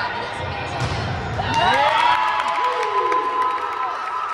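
Crowd of players and spectators cheering and shouting in a gymnasium, with several voices rising and falling in pitch; the loudest stretch comes about two seconds in.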